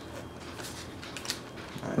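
Trading cards from a booster pack being slid and flipped through by hand: faint, soft rustles and light clicks of card against card.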